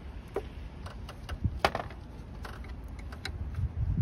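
A few scattered small metallic clicks and clinks as a bolt and a cordless impact driver's socket are handled under the hood, over a low wind rumble on the microphone that swells near the end.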